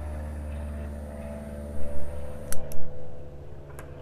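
Butane torch lighter being worked to light a cigar, with a couple of soft thumps about two seconds in and then sharp clicks, over a steady low hum.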